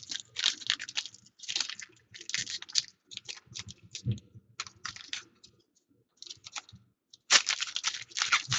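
Foil wrapper of a football trading-card pack crinkling and tearing as hands pull it open, in irregular crackles with a short pause about six seconds in and a louder burst near the end.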